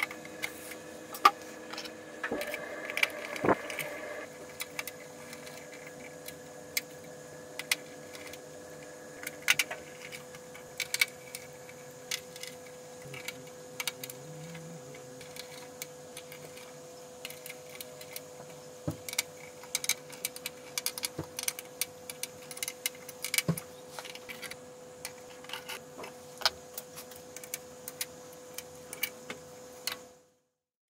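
Irregular small clicks and taps of metal and plastic parts being handled as a server motherboard and its tray are worked on and refitted, with a faint steady hum beneath.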